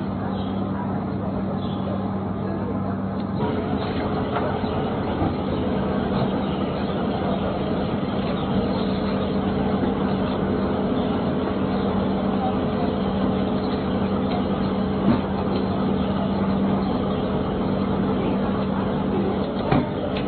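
Steady outdoor street noise with an engine running at a constant low hum, joined by a second steady tone a few seconds in, and a couple of faint knocks.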